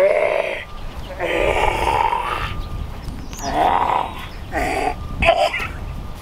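A man's voice making short wordless vocal sounds, five or six bursts from under a second to about a second long.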